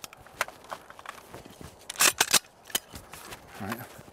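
Sharp metallic clicks and clacks of an AR-15 rifle being handled and loaded, with a louder cluster of clacks about two seconds in.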